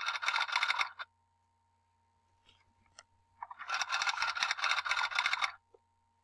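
Typing sound effect: rapid keystroke clicks in two bursts, about a second at the start and about two seconds from midway, with a faint steady hum underneath.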